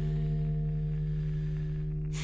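Guitar chord ringing out and slowly fading: a low held note with its overtones, no new strum.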